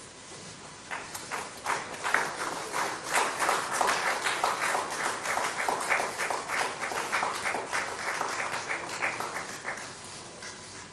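Audience applauding, the clapping starting about a second in, building, and tapering off near the end.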